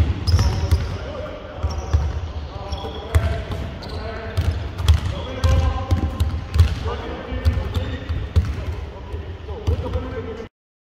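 Basketballs bouncing on a hardwood court floor, irregular thumps from dribbling during a drill, with indistinct voices of players calling out over them.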